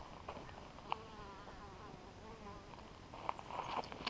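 A small flying insect buzzing close by for about two seconds, starting about a second in, its pitch wavering up and down as it moves. A sharp click comes at the start and another just before the buzz, and there are a few short knocks near the end.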